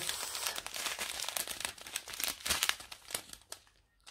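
Clear plastic strip bags of diamond painting drills crinkling as they are handled, a run of irregular crackles that stops shortly before the end.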